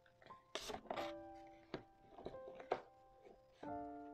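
Soft background music of slow, single piano notes ringing out and fading, with light rustling and crinkling of a paper booklet's pages being handled and opened.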